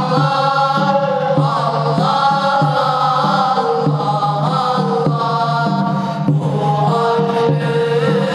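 A group of boys chanting a religious recitation in unison, a continuous melody of long held notes that slide from pitch to pitch.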